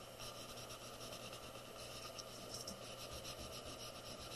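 Paper towel wrapped around a finger rubbing chalk pastel into drawing paper to blend the colours: a faint, soft scrubbing in repeated strokes, a little clearer in the second half.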